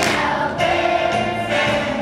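Children's choir singing a song together over musical accompaniment with a steady beat, about two beats a second.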